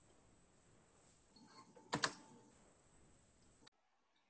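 Faint room tone picked up by a video-call microphone, with a thin steady high whine, a soft click about one and a half seconds in and a sharper click about two seconds in. The sound cuts off abruptly near the end.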